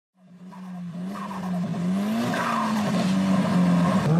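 Racing car sound effect opening the track: an engine note fading in from silence and holding steady, wavering slightly in pitch.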